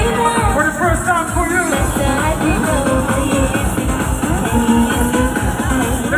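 Live dance music from a DJ set played loud over a concert sound system, with a steady, regular kick-drum beat and a sung vocal line.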